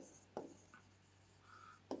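Faint pen-on-screen writing on an interactive display: a stylus tapping down and scratching across the glass, with two sharp taps about a second and a half apart.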